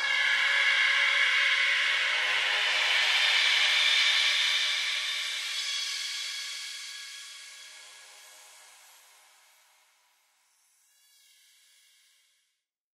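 Outro of a neurofunk drum and bass track: a sustained, hissy synth chord with no drums, fading out from about four seconds in until nearly silent. Near the end a faint, brief tonal swell comes and goes.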